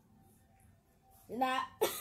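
Quiet for over a second. Then a short voiced sound about one and a half seconds in, followed by a sudden breathy burst near the end.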